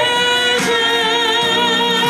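A woman singing a worship song into a microphone over instrumental accompaniment, holding one long note with vibrato from about half a second in.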